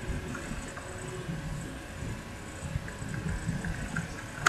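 Pencil drawing on lined notebook paper: irregular rubbing strokes and small knocks, with a faint steady hum underneath.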